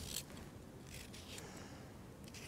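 Small curved turning knife shaving strips off a raw carrot: three faint, crisp cutting strokes.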